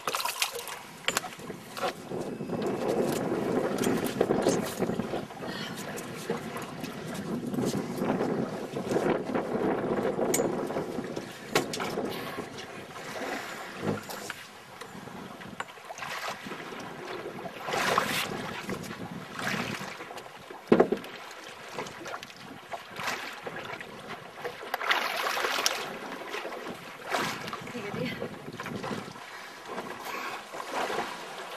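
Wind buffeting the microphone over water lapping against a small boat's hull at sea, with a few louder rushes about two-thirds of the way in and a brief knock between them.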